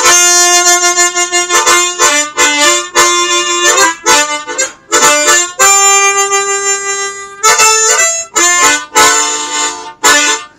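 Easttop T10-40 10-hole valveless chromatic harmonica played solo: held single notes and quicker runs of changing notes, broken by a few brief pauses. The player finds it well in tune overall, with holes 3 and 4 needing a little tuning.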